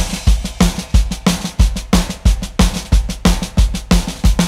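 Drum kit playing a steady rock beat as the intro of a blues-rock song, with the bass drum hitting about three times a second under snare hits.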